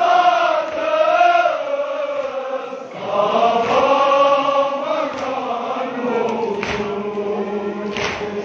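Male voices chanting a noha, the Shia Muharram lament, in long drawn-out sung lines. There is a short break near three seconds before the next line begins.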